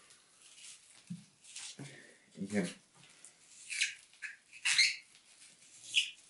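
A cucumber being twisted through a small handheld plastic spiral slicer: a few short scraping, crunching bursts as the blade cuts, bunched in the second half.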